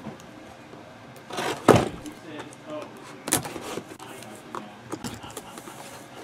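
A cardboard trading-card box being handled and opened on a table: scattered knocks, taps and rustles of cardboard. The sharpest knock comes just under two seconds in, and another a little past three seconds.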